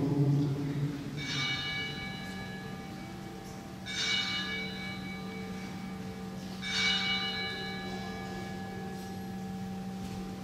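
A bell struck three times, evenly spaced a little under three seconds apart, each strike ringing out and dying away, over a faint steady low tone: the bell rung at the elevation of the host during the consecration of the Mass.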